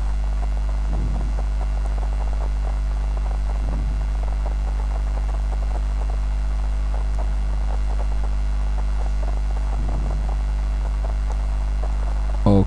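Steady electrical mains hum with a stack of even overtones, picked up on the recording microphone.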